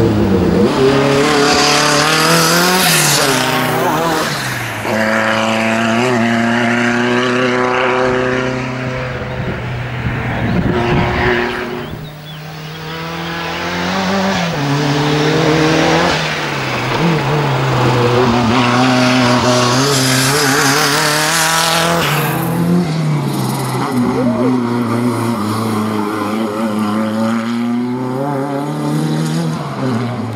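Renault R5 Turbo's turbocharged four-cylinder engine revving hard and easing off again and again as the car is driven through a cone slalom, with tyre squeal. The revs dip briefly about twelve seconds in.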